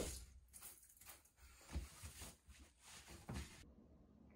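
Cloth hand towel being rubbed and scrunched around wet hands in irregular rustling strokes, with a couple of soft bumps; it cuts off suddenly near the end.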